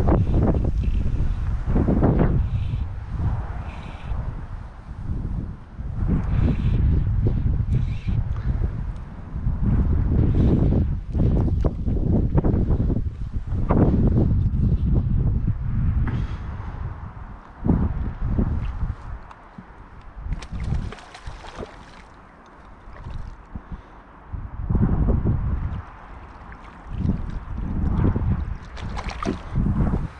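Wind gusting against the microphone in loud low rumbles that come and go, with water sloshing at the bank.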